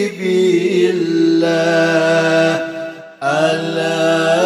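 Sholawat, an Arabic devotional chant in praise of the Prophet, sung in long held notes, with a brief pause about three seconds in.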